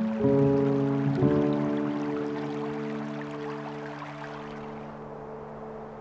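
Soft piano music: a chord struck about a quarter second in and another about a second in, both left ringing and slowly dying away. Under it, a hiss of running water that fades out near the end.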